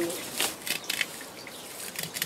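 Freshly picked clary sage flower stalks being handled, giving a scatter of short, crisp crackles and rustles.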